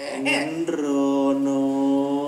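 A voice says a couple of words, then about half a second in breaks into one long sung note. The note holds steady in pitch to the end, in the drawn-out style of Thai theatrical singing.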